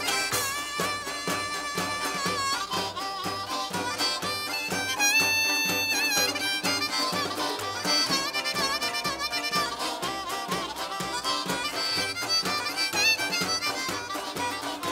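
Acoustic string band playing an instrumental passage live: a harmonica carries the lead with long held and bent notes over upright bass, guitar and fiddle keeping a steady beat.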